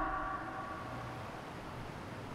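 A pause in speech: faint, steady background hiss of room noise with nothing else standing out.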